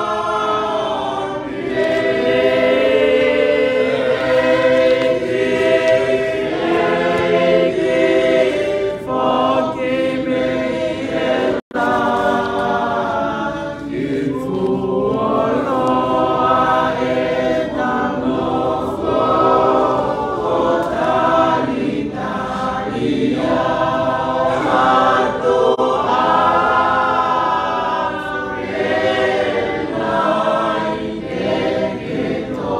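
Church choir singing a hymn, the voices held in long sustained notes. The sound cuts out for a split second about twelve seconds in.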